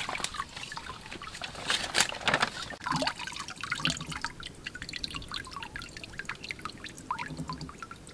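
Rice being rinsed by hand in water in a clay pot, then the cloudy rinse water poured off, trickling and dripping through bamboo slats into the water below. The swishing is louder in the first couple of seconds; after that come many small drips.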